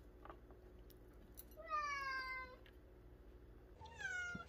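Domestic cat meowing: one call about a second long, falling slightly in pitch, then a second meow starting near the end.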